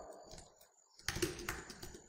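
Computer keyboard being typed on: a run of quick, light keystrokes that starts about a second in.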